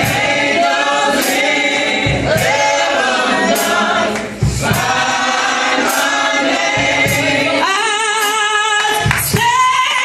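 A group of voices singing a gospel praise song together, with a steady beat of sharp hits about every second and a quarter.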